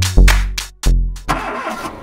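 Loud transition sound effect: two deep booming hits about two-thirds of a second apart, each dying away, then a rushing noise that fades.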